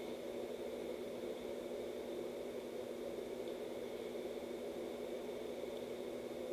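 Steady indoor background noise: a constant low hum with hiss, unchanging throughout.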